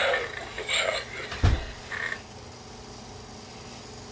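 Halloween animatronic tree-monster prop's speaker playing short breathy, hissing creature sounds, with a sharp thump about a second and a half in. Its sound cycle then ends, leaving a faint steady electrical hum.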